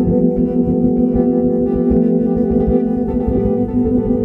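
Music: guitar played through effects, holding sustained, ringing tones at a steady level.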